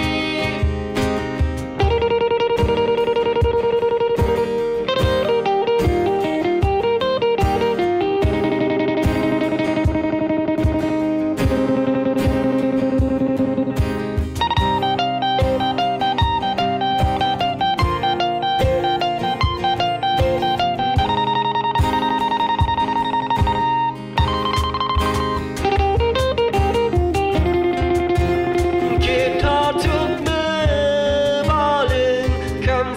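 Instrumental break in an unplugged band cover: two acoustic guitars strumming and picking over a cajon beat, with a lead melody of long held notes and no singing.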